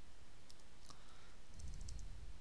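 Computer keyboard keys clicking, a few separate presses, with a small cluster near the end, as typed code is deleted and re-entered.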